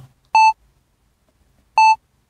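Short electronic beeps of a single high pitch, sounding twice about a second and a half apart as a repeating element in the track's backing, with near silence between them.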